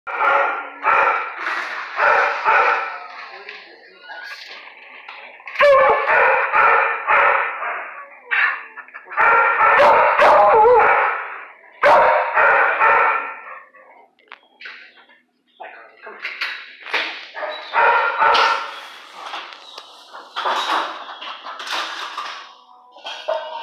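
Dogs barking in a shelter kennel room, in bouts of rapid repeated barks with a brief lull about two-thirds of the way through.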